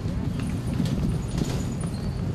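Outdoor street noise with a dense, irregular run of knocks and clatter.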